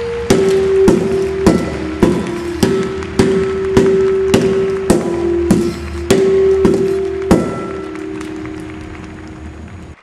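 Scuba tanks bounced on a hard floor one after another, about two knocks a second, each tank ringing with its own pitch so that the run makes a simple tune. Each tank's pitch is set by how much air is in it: the higher the pitch, the fuller the tank. The last ring, near the end of the run, fades out.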